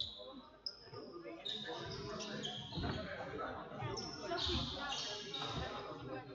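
Indoor basketball game: a basketball bouncing a few times on the wooden gym floor, short high sneaker squeaks, and the voices of players and spectators echoing in the sports hall.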